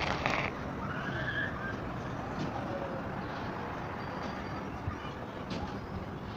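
Steady hum of distant city traffic heard from high above the streets, with a brief high-pitched sound right at the start.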